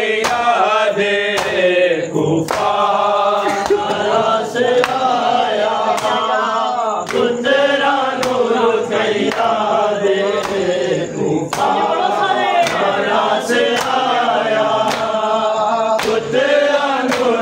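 A crowd of men chanting a mourning lament (nauha) together, with sharp slaps of hands on bare chests (matam) landing about once a second in time with the chant.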